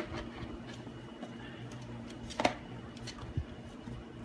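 Plastic cover of an ultrasonic essential oil diffuser being handled on its base, with a sharp click at the start and another about halfway through as it locks into place.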